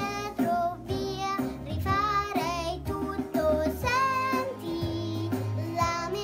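A young girl singing a song, with a waver of vibrato on the held notes, over instrumental accompaniment with a steady bass line.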